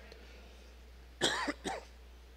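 A man coughing twice, short and close together, a little past the middle of an otherwise quiet pause with a low steady hum.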